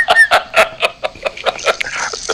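People laughing, a fast run of short 'ha' sounds several a second, heard over a phone-call line.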